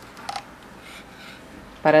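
Faint handling of knitting needles, yarn and a metal safety pin over quiet room tone, with a short light click about a quarter of a second in.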